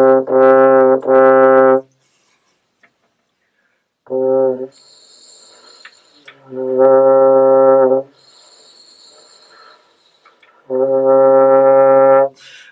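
French horn playing the same low note, written G (concert C), several times: a held note broken twice near the start, a short one about four seconds in, then two longer notes of about a second and a half. Faint breathy air noise fills the gaps between notes. The notes demonstrate the player's lip buzz, mostly air, becoming a real buzz against the horn's back pressure.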